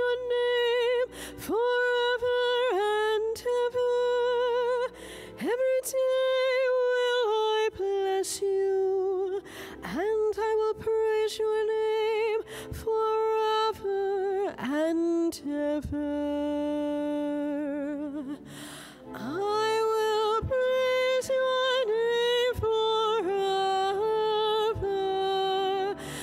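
A woman cantor singing the responsorial psalm solo into a microphone: a slow melody of long held notes with vibrato, in short phrases with breaths between, one long lower note about two-thirds of the way through.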